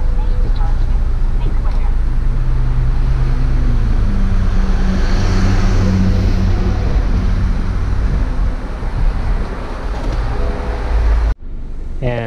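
BMW 4 Series convertible's folding hardtop retracting, its hydraulic pump and roof mechanism humming steadily, with the tone shifting about four seconds in as the roof panels fold into the trunk. The sound cuts off suddenly near the end.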